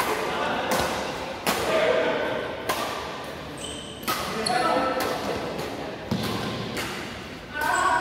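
Badminton rackets striking a shuttlecock in a fast doubles rally: about a dozen sharp hits, a little under a second apart, echoing in a large hall.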